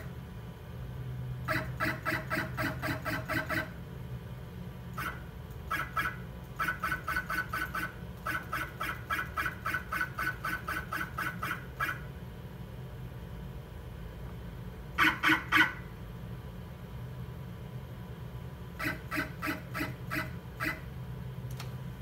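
Z-axis stepper motor of a Genmitsu PROVerXL 4030 CNC router jogging the spindle down in short repeated moves: a steady-pitched whine pulsing about four or five times a second in several runs, with a louder burst of three pulses about two-thirds of the way through. The axis now moves freely after a GRBL reset and unlock, lowering the spindle toward the work surface.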